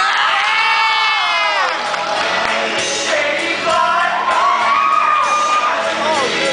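A group of young men singing on stage over a cheering, whooping crowd. A long high note is held and slides down, ending under two seconds in, and another high note is held near the end.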